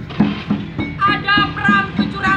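Live percussion music with a steady beat of about three strikes a second, and a high voice singing over it from about a second in.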